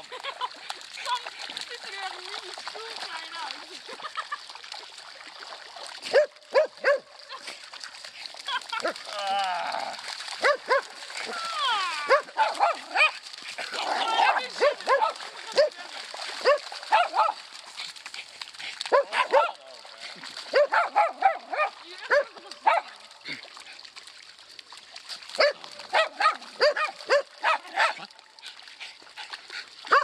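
Small white spitz dogs barking and yipping in quick runs of short, sharp barks, sparse at first and much busier from about six seconds in, with some sloshing as they wade through shallow water.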